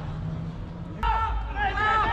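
High-pitched voices shouting near the microphone, starting suddenly about a second in, after a low steady hum.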